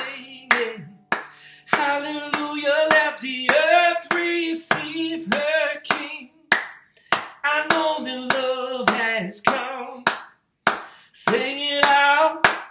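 A man singing a hymn-like tune without the guitar, clapping his hands to keep time, a little under two claps a second.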